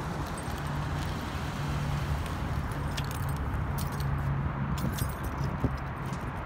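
Light metallic clinks and jingles, most of them in the middle of the clip, over a steady low car rumble.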